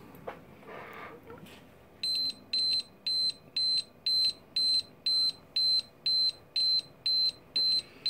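Canberra ADM-300 survey meter beeping its audible rate signal: short high-pitched beeps, evenly about twice a second, starting about two seconds in, while it reads about one milliroentgen per hour of gamma from a radium-painted compass. Faint handling noise comes before the beeps.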